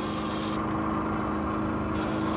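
A steady mechanical hum with a few constant tones, like an engine idling, over a background hiss; the higher part of the hiss cuts off about half a second in.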